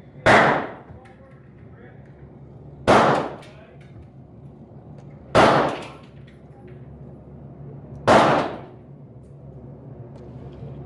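Four gunshots at the range, about two and a half seconds apart, each followed by a short echo that dies away within about half a second.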